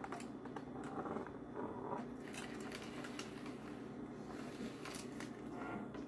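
Faint scattered clicks and scratchy rustles from a plastic lattice toy board and its string being handled.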